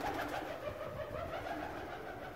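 A pigeon cooing low and continuously in a narrow stone passage.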